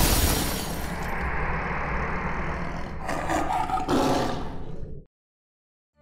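Cinematic sound-design rumble: a loud hit at the start, then a dense, rough roar with a steady low hum, which cuts off suddenly about five seconds in.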